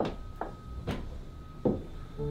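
Office chair taking a person's weight as she sits down and settles: about four short knocks spread over two seconds.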